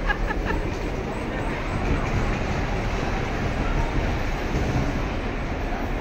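Bumper car driving across the rink floor: a steady rumble with no collisions.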